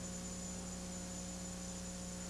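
Steady electrical mains hum with a faint even hiss underneath, unchanging.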